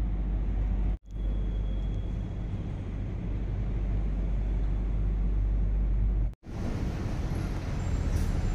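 Steady low rumble and hiss of background noise, cut to silence twice for a moment, about a second in and just after six seconds, where clips are joined.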